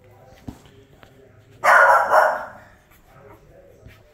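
An adult dog barks once, a short, loud bark about halfway through, lasting under a second.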